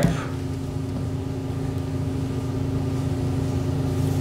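A steady low mechanical hum with no change in level.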